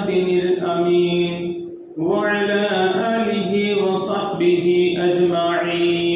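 A man's voice chanting in long, held melodic phrases, with a brief break about two seconds in.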